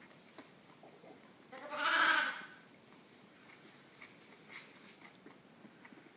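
A lamb bleats once, a single call of about a second, starting about one and a half seconds in. A brief sharp click follows a few seconds later.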